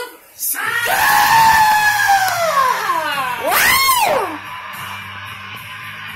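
A woman's voice singing-shouting one long, strained high note that slides steadily downward for nearly three seconds, then a short whoop that swoops up and back down. Quieter recorded music with a steady bass carries on after it.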